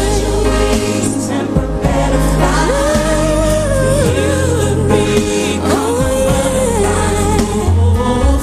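Live R&B pop ballad: a female singer holding long, wavering notes over a slow band accompaniment, with backing singers.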